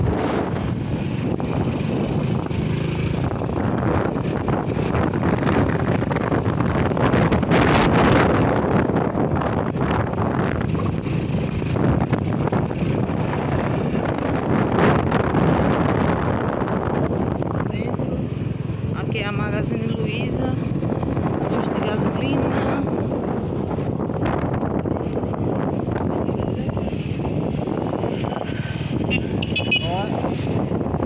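Wind rushing over the microphone, with engine and road noise from a moving motorcycle.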